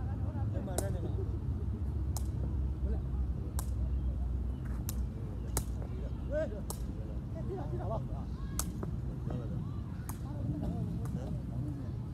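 A cane ball being kicked back and forth over a net: about ten sharp smacks at uneven gaps of one to two seconds, with players' voices calling faintly in between.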